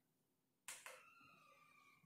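Near silence: quiet room tone, broken by two faint clicks a little under a second in, then a faint, steady high tone.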